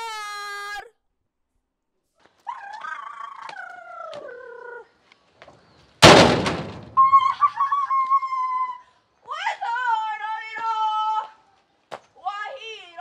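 A high voice singing in long, drawn-out, wavering notes, broken about halfway through by a single loud bang that dies away within about a second.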